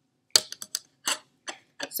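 Plastic Petri dish and lid being handled and set down on a lab bench: about six light clicks and taps in quick, uneven succession.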